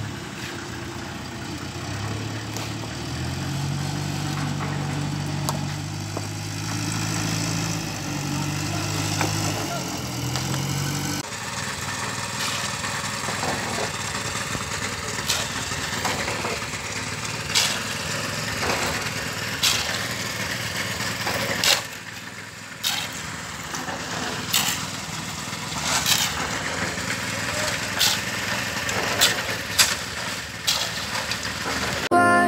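Stone-masonry site sound: a motor runs steadily with a low hum for the first third. Later come sharp knocks of a shovel and rocks striking stone, every two seconds or so.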